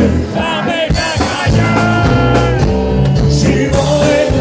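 Live country-rock band playing loudly: acoustic guitar strumming over bass and drums, with a man singing into the microphone.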